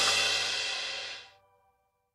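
Background music dying away: its last ringing notes and high cymbal-like shimmer fade out over about a second and a half, leaving silence.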